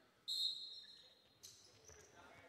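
Sneakers squeaking on the hardwood court: a high, steady squeal about a second long, then a second, shorter squeak about a second and a half in.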